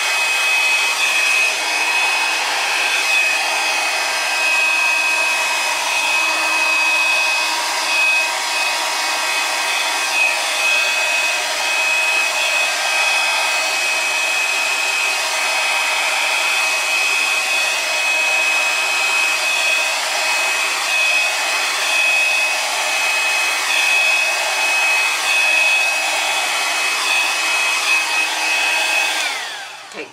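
Drew Barrymore Flower handheld hair dryer running steadily, a rush of air with a constant high whine, blowing wet acrylic paint across a canvas. It switches off just before the end.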